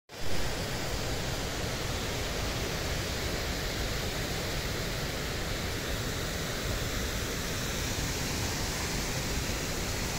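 Wind on the microphone: a steady rushing hiss with an uneven low rumble underneath.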